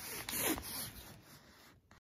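Rustling and handling noise of a person moving close to the recording device and reaching for it, loudest about half a second in, then fading.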